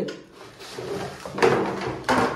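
Plastic motorcycle fairing panels being handled, scraping and rustling against each other and the newspaper beneath them, loudest about a second and a half in.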